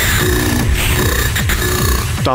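Hard techno: a steady kick drum a little over two beats a second, with short pitched synth stabs between the beats.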